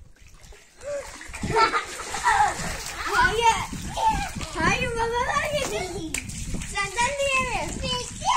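Children's high-pitched voices calling out, with water splashing onto concrete during a water fight.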